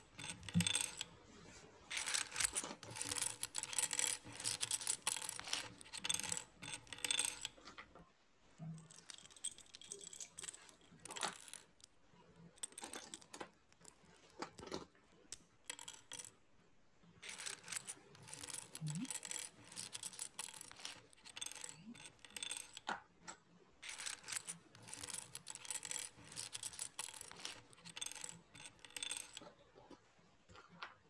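Loose plastic Lego bricks clattering and clicking as hands rummage through a pile and fit bricks together. The sound comes in busy spells of dense rattling, with a sparser stretch of single clicks in the middle.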